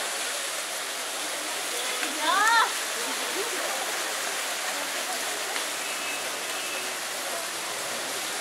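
A street fountain's water jets splashing as a steady hiss under the chatter of passers-by, with one short high-pitched cry about two seconds in.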